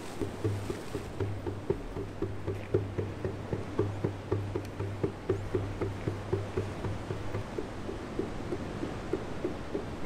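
Hand drum beaten in a steady rhythm, about three strokes a second, over a low steady tone that stops about seven seconds in.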